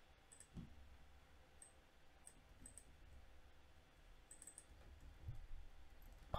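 Near silence with faint, scattered clicks of a computer keyboard and mouse as a few keys are typed, with a couple of soft knocks.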